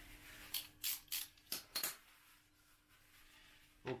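Paper towel from a roll being handled and crumpled: about five short, dry rustles in the first two seconds.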